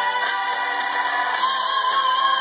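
Music playing through a laptop's small built-in speakers, with no bass.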